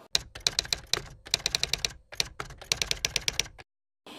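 Typewriter key-strike sound effect for on-screen text being typed out letter by letter: rapid clicks in three runs with short pauses, stopping shortly before the end.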